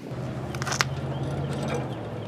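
Socket wrench being fitted onto a snowblower's oil drain plug, giving a few short metal clicks a little under a second in, over a steady low hum.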